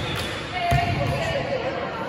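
A volleyball strikes once a little after a third of the way through. Indistinct players' voices echo through a large gym.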